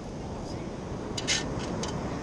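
Steady surf and wind noise at the water's edge. A sand scoop is being handled to get a dug coin out, with a few short scraping clinks just past a second in and again near the end.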